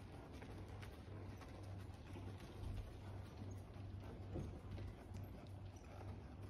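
Hooves of a Quarter Horse gelding walking on the soft dirt footing of an indoor arena: a faint, steady series of dull hoofbeats.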